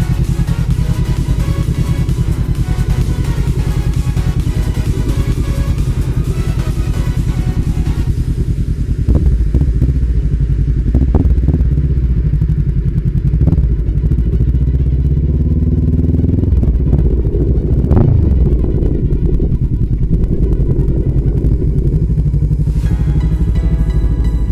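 A motorcycle engine runs steadily at low speed with a dense pulsing rumble, with a few sharp knocks along the way. Electronic music plays over it for the first several seconds, fades out, and comes back near the end.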